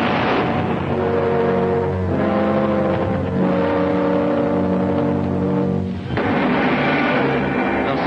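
Dramatic orchestral serial music: loud held chords that shift every couple of seconds. A rush of explosion noise bursts in at the start, and another rush of noise comes in about six seconds in.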